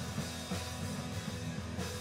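Live rock band playing an instrumental stretch between sung lines: drum kit and electric guitar over a steady low end, no vocals.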